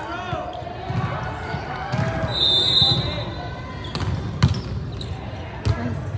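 A referee's whistle blows once, short and steady, a little over two seconds in. About two seconds later comes a sharp smack of a hand striking a volleyball, the serve, with a few more ball hits around it. Shouting and talking voices run underneath.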